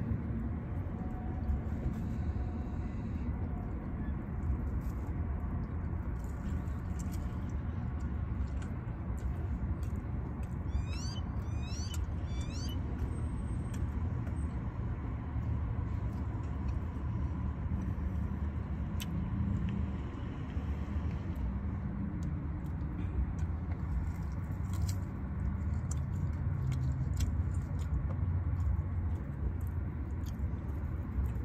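A steady low rumble inside a parked car, with scattered small clicks from eating and handling the takeout food. About ten seconds in comes a quick run of high, squeaky chirps lasting a couple of seconds.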